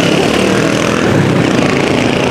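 Street traffic: small motorcycle and motorcycle-sidecar tricycle engines and cars passing through an intersection, a steady, loud mix of engine noise.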